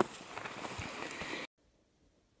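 A single sharp knock at the very start, then wind buffeting the microphone, which cuts off suddenly to near silence about one and a half seconds in.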